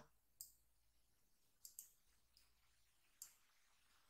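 Faint, scattered clicks of a computer mouse and keyboard while code is selected, copied and pasted: about five clicks, two of them close together near the middle.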